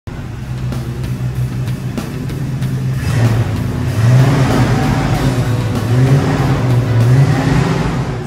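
Car engine running and being revved several times, its pitch rising and falling with each rev.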